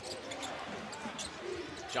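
Basketball being dribbled on a hardwood court, a series of short bounces, over the steady noise of an arena crowd.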